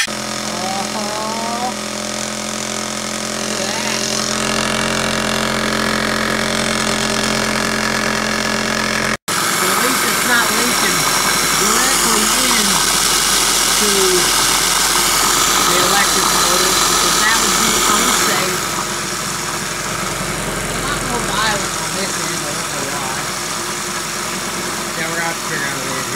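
Old electric hand sander running steadily, shaking a clamped stainless steel tray of hot water and degreaser, so the tray and liquid buzz and rattle as a makeshift ultrasonic-style parts cleaner. The hum is steady at first, drops out very briefly about nine seconds in, then comes back busier and noisier.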